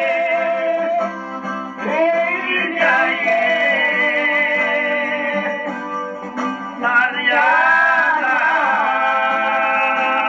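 A song: a singer holding long, wavering notes over plucked-string accompaniment. It sounds thin, with no bass, as if played from a screen's speaker and picked up by a phone.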